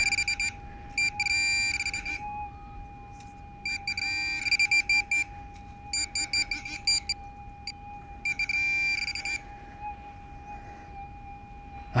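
Handheld metal-detecting pinpointer beeping in about six short bursts of rapid pulses, each a second or so long, as it is probed through the sand over a buried target. A steady tone from the metal detector's threshold runs underneath.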